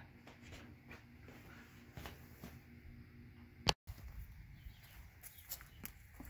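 Quiet background with faint scattered clicks and a low rumble. About three and a half seconds in there is a sharp click and a moment of total silence, an edit splice, after which the faint clicks and rustles carry on.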